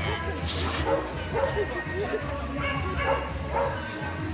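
A dog barking in a run of short barks, over background music and voices.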